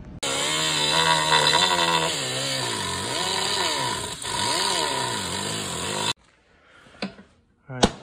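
Small handheld grinder with a cutoff wheel cutting the lip off an aluminum Recaro seat side bracket. The motor's pitch dips and recovers as the wheel bites into the metal, and it stops abruptly about six seconds in.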